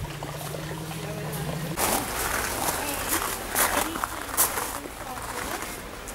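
Faint, indistinct voices with a low steady hum that stops about two seconds in, followed by a few short rustles or knocks.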